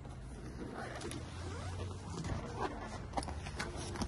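Faint rustling and small clicks of a vinyl seat-back curtain being handled, over a low steady hum.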